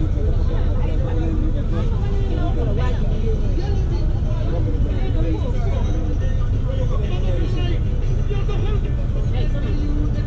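Steady low engine and road rumble inside a moving vehicle, with voices talking throughout.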